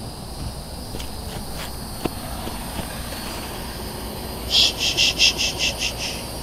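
Insect chirping: near the end, a quick run of about eight sharp, high-pitched pulses over a second and a half. Before it there is only a faint outdoor background with a few light ticks.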